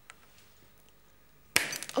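Kitchen knife slipping off a hard popcorn kernel, which it fails to cut, and clattering on a plastic cutting board: a sudden sharp clatter about one and a half seconds in, after near silence.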